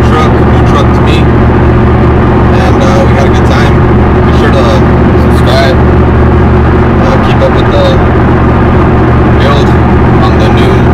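Steady drone of a Chevrolet Silverado pickup's engine and road noise heard from inside the cab at highway speed, with a man's voice talking over it.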